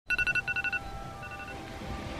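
Electronic alarm beeping in quick groups of four: two loud bursts, then fainter beeps and a held tone.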